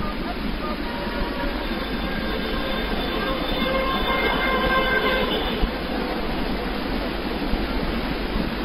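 Steady hiss and room noise of a prayer-hall recording during a silent pause in congregational prayer. Faint indistinct voices come through about two to five seconds in.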